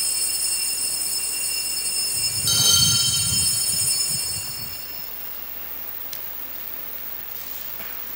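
Altar bells rung at the elevation of the chalice, marking the consecration: a ringing that carries on from before, then a second, louder ringing about two and a half seconds in with a low rumble beneath it, fading out by about five seconds.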